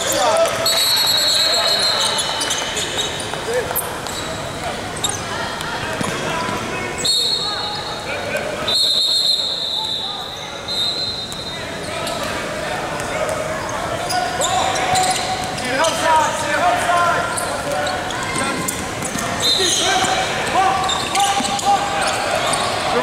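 Basketball being dribbled and bounced on a hardwood gym floor, with high squeaks from sneakers and voices calling out, all echoing in a large hall.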